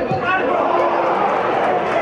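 Speech: a man's voice over steady background noise.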